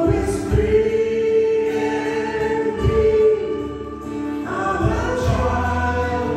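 Praise team singing a worship song through the PA, with acoustic guitar, keyboard and drums keeping a steady beat. The voices hold long notes, and a new, fuller phrase begins about four and a half seconds in.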